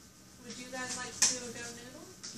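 A voice speaking indistinctly, with one sharp tap a little past halfway.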